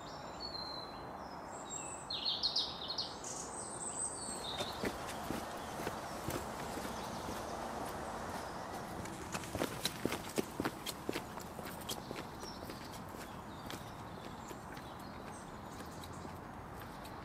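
Footsteps on a paved pavement passing close by about ten seconds in, then moving off, over steady outdoor background hum. A few bird chirps in the first few seconds.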